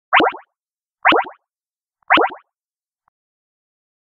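Countdown sound effect: three short cartoon-style hits, one a second, each a quick flutter of falling pitch sweeps, then silence.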